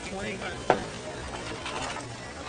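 Low steady background hiss with faint murmuring voices, and one sharp click a little under a second in.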